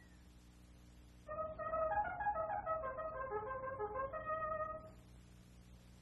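Wind instruments in an old cartoon's orchestral score play a short melodic phrase of held notes stepping up and down, starting about a second in and stopping a second before the end. A steady low hum of an old soundtrack lies underneath.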